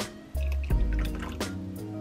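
Background music with a steady beat, over water being poured from a plastic bottle into a plastic cup and splashing into it.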